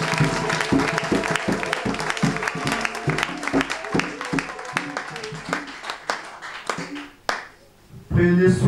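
A congregation clapping hands together in a quick, steady rhythm while voices sing along; the clapping and singing thin out and die away about a second before the end.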